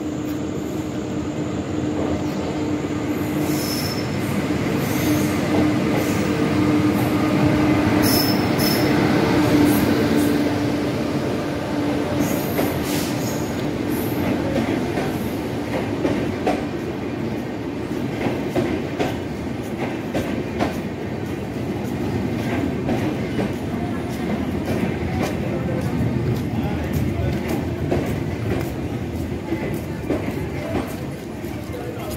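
A passenger train of LHB coaches pulling in along a station platform. A steady hum builds to its loudest about ten seconds in as the head of the train passes, with brief high wheel squeals and a run of clicks from wheels crossing rail joints as the coaches roll by.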